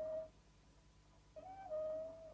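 Quiet instrumental passage of the background song: a held flute-like note fades out just after the start, and a second one begins about one and a half seconds in, stepping down from a short higher note to a held one.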